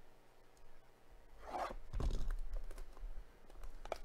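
Shiny trading card pack wrapper being torn open by hand: one crinkling rip of about a second near the middle, then a few short sharp crackles of the wrapper near the end.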